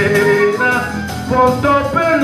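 Live acoustic guitar and drum kit playing a song together, with a held melody line stepping between notes over the chords and percussion.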